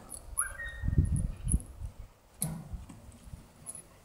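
Seven-month-old German Shepherd giving a short, high, thin whine about half a second in that rises and then holds briefly, over patches of low rumbling noise.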